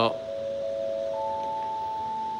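Airport public-address chime: steady electronic tones, two low notes together and a higher note joining about a second in, all held and ringing on.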